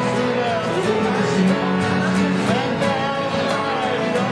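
Live folk session music: an acoustic guitar strummed alongside a digital keyboard, with a melody line gliding above them from a small wind instrument played at the mouth.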